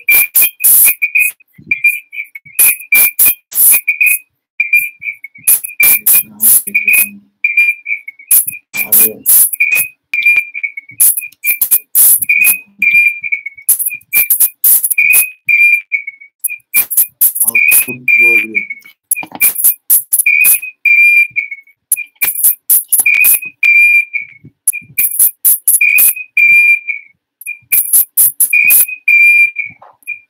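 Garbled live-stream audio: a high whistling tone cut into short pieces about once or twice a second, with bursts of hissy static between them. This is the sound of a faulty audio signal from the streaming software.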